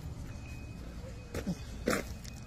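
Quiet outdoor background with a steady low rumble and a faint thin steady tone, broken by two brief, faint voice sounds near the end.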